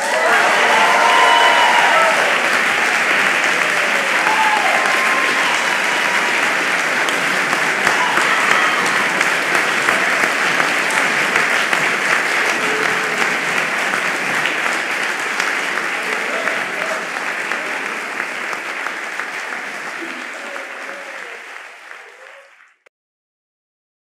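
Concert audience applauding loudly right after the final chord, with a few cheering voices in the first few seconds. The applause fades out gradually over the last several seconds.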